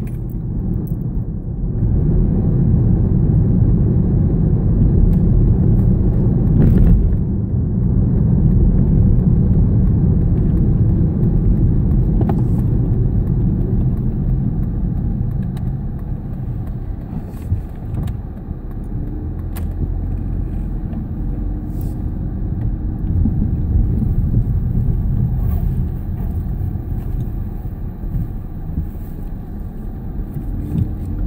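Inside a moving car: steady low road and engine rumble, with a few brief light rattles or clicks scattered through. The rumble eases somewhat in the second half as the car slows.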